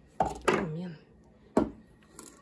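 Two sharp kitchen knocks about a second and a half apart, with a brief voice sound between them.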